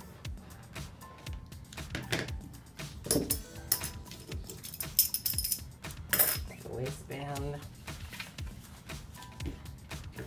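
Flat metal washers used as pattern weights clinking against each other as they are picked up and stacked, among the clicks and rustles of handling paper pattern pieces; the brightest, ringing clinks come about three, five and six seconds in.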